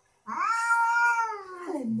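Sphynx cat giving one long, drawn-out meow that rises at the start, holds, and falls away at the end.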